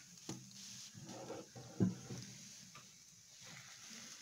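Mostly quiet, with a few faint knocks and crinkles from a plastic bottle being squeezed and handled over a model volcano; two short knocks stand out, one just after the start and one under halfway through.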